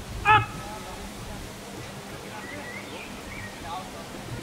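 A single short, loud shouted one-word command from a dog handler, a brief sharp call about a third of a second in, over a steady outdoor background.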